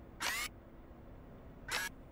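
Two short, noisy sound-effect bursts from a vacuum-cleaner puppet character: the first, about a quarter second in, sweeps upward in pitch, and a briefer one comes near the end, over a faint steady hum.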